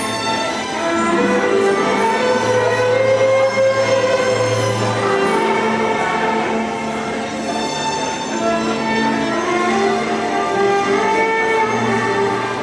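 Amplified violin played live over a recorded backing track: long bowed notes ring out over steady sustained bass notes.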